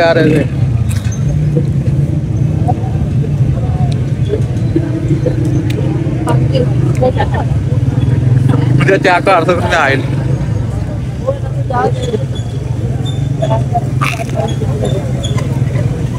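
Steady low drone of a motor vehicle engine running close by amid street traffic, with a few short stretches of voices in the second half.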